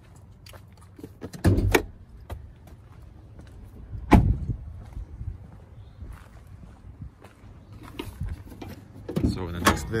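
Clunks and thumps from a Ford F-450 pickup's cab door as someone gets out, with a single loud door shut about four seconds in, and more knocks near the end.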